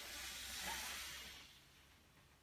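A man breathing out audibly through the mouth, a soft hiss lasting about a second and a half and fading, as he lowers from a Pilates teaser: the controlled out-breath that goes with the lowering phase of the exercise.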